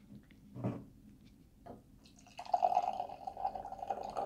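Beer poured from a can into a glass, the pour starting a little past halfway and running on steadily. Before it, a few faint clicks as the can is opened.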